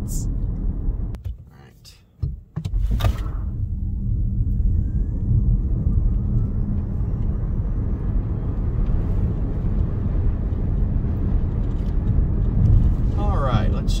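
Road and tyre rumble inside the cabin of a Ford Mustang Mach-E GT Performance electric car travelling at about 70 mph, with a faint whine rising in pitch about four seconds in. The sound dips at a cut about two seconds in.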